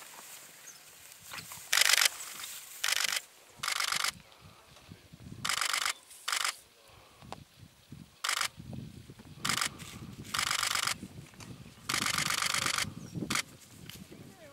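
Camera shutters firing in bursts of rapid continuous shooting, about ten bursts of quick clicks, each from a fraction of a second to nearly a second long, with quieter low rustling between them.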